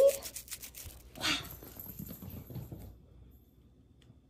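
A kitten's paws scrabbling on a rug in a quick run of sharp taps, about eight a second, as it dashes for a thrown ball, followed by faint rustling.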